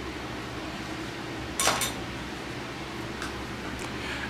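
Quiet room with a steady low hum, and a single short clink of a small hard object about a second and a half in.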